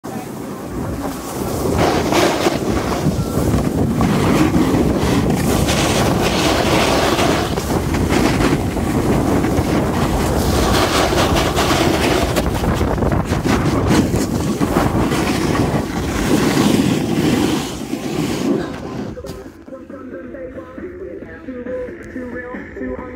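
Rushing noise of wind buffeting a phone microphone and a snowboard sliding and scraping over hard-packed snow during a fast run, swelling and easing as the board turns. It drops away sharply near the end as the rider slows.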